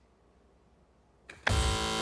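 Game-show contestant's buzzer going off about one and a half seconds in, a loud steady electronic buzz after near silence. It signals a contestant buzzing in to answer.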